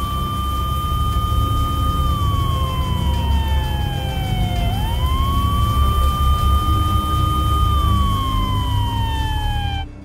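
An emergency vehicle siren wails in long cycles, rising, holding, then sliding slowly down, about twice, over a steady high tone and a heavy low rumble. It all cuts off suddenly near the end.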